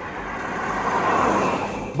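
A Honda Civic sedan driving past on a highway: mostly tyre and road noise that swells as it approaches, peaks about a second in, then eases a little.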